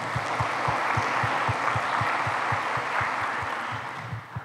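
Audience applauding steadily, a round of clapping that fades out near the end.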